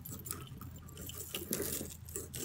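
Faint, scattered clicks and light rattling of beaded necklaces and metal chains being handled on the hooks of a jewellery cabinet, as a necklace is tugged at to get it off its hook.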